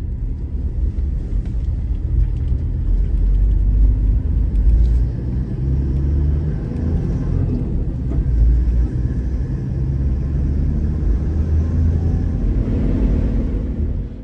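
Low, uneven rumble of a vehicle on the road, swelling and easing, with no clear engine note.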